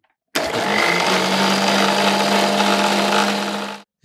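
Electric mixer grinder running a steel jar of curry leaves, mint, ginger and water: the motor starts suddenly, settles into a steady whine after a short rise in pitch, runs for about three and a half seconds and cuts off abruptly.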